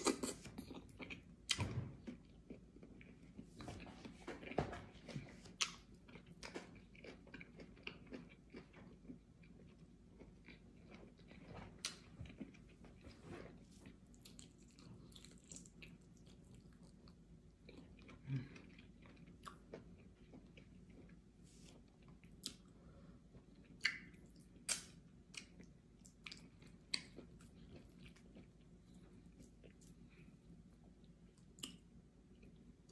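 Faint chewing and mouth sounds of a person eating fufu with slimy ogbono soup by hand, with irregular short wet clicks, a few louder ones in the first seconds.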